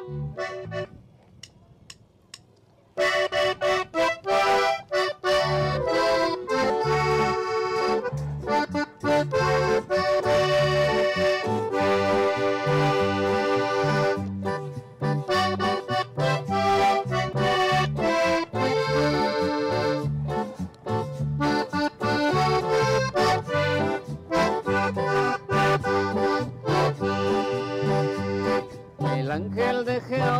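A norteño-style band strikes up about three seconds in, after a few soft clicks: an accordion carries the melody over a bass line, keyboard and electronic drums. It is the instrumental introduction of a song, with no singing yet.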